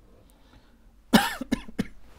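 A man coughing three times in quick succession, the first cough the loudest and longest.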